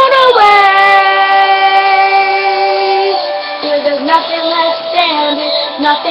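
Solo voice singing a chorus, holding one long steady note for about three seconds, then carrying on through shorter notes of the melody.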